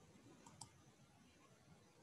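Near silence: faint room tone, with two faint clicks close together about half a second in.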